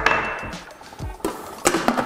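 A small glass bowl is set down with a sharp clink and a short ring. Then the plastic lid of a Thermomix is knocked into place on its steel mixing bowl with a few sharp clicks and knocks, over background music.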